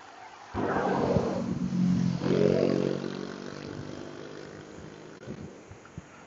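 A car passing close by on the road alongside: a rush of tyre and road noise starts about half a second in, then a steady engine hum that fades away over the next few seconds.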